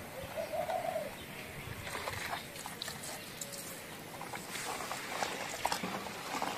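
Hands sloshing and splashing in a bucket of frothy foaming-agent solution, whipping it into foam, with scattered wet clicks and splashes. A single short cooing bird call sounds in the first second.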